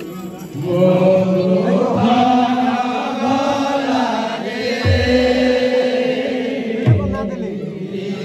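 Amplified kirtan singing: a male voice chanting long, wavering held notes through a sound system, with a couple of low thumps about five and seven seconds in.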